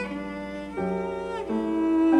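Bowed cello playing sustained notes in a classical sonata, moving to a new note about every three quarters of a second and growing louder toward the end.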